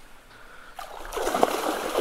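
A large hooked fish splashing and thrashing at the water's surface close to the bank, starting a little under a second in and growing louder.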